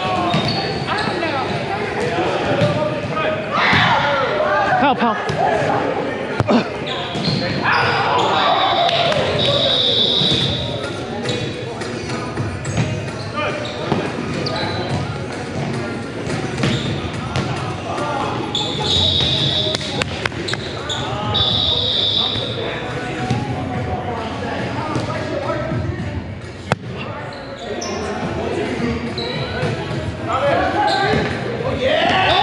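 Indoor volleyball rally in a large, echoing gym: the ball being struck and hitting the hardwood floor, players' feet on the court, and voices calling out. Three high steady tones, each about a second long, sound around a third of the way in and again about two-thirds of the way in.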